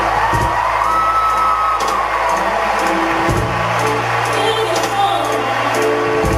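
A woman singing into a microphone over a song's backing track with a steady bass line and percussion, holding a long note about a second in.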